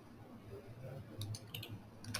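Faint clicking at a computer: a handful of quick, sharp clicks a little after a second in, over a steady low hum.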